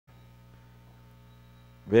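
Faint, steady electrical mains hum, an even buzz of several fixed tones, with a man's voice starting abruptly near the end.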